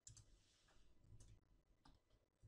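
Faint clicking of a computer mouse and keyboard, a few short separate clicks, over near-silent room tone.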